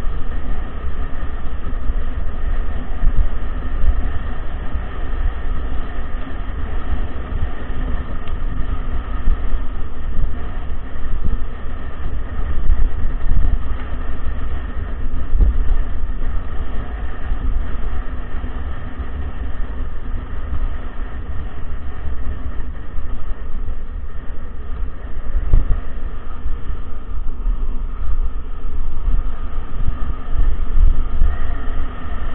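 Wind buffeting an action camera's microphone over the steady rumble and rattle of a mountain bike rolling along a bumpy dirt track.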